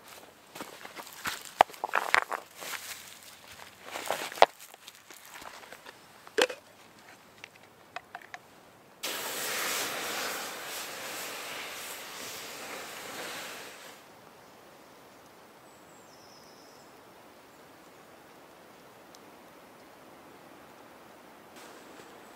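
Water poured onto a hot campfire's embers and stones, a steady hiss of steam that starts suddenly about nine seconds in and lasts about five seconds. Before it come scattered knocks and clicks.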